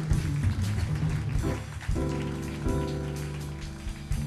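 Live jazz instrumental passage: piano chords and upright bass playing over light drums, with no vocal.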